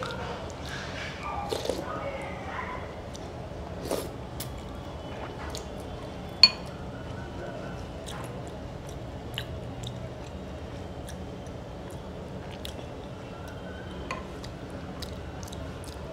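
A spoon stirring and scraping in a glass bowl of thick soup, with scattered soft clinks and one sharp, ringing clink of spoon on glass a little past the middle, the loudest sound.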